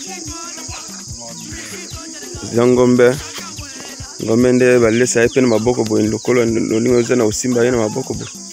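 Background music with a steady beat and a loud voice coming in about two and a half seconds in, over a steady high-pitched insect chirring.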